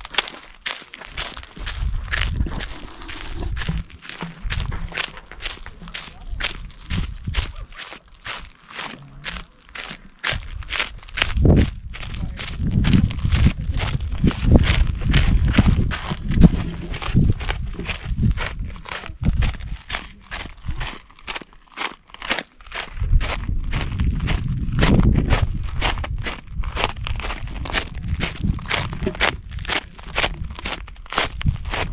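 Footsteps crunching on a gravel trail at a steady walking pace. At times there are stretches of low wind rumble on the microphone.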